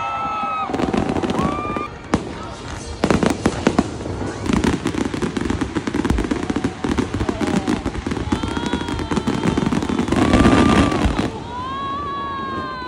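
Fireworks going off: a dense run of bangs and crackles, with sharp clusters about three seconds in.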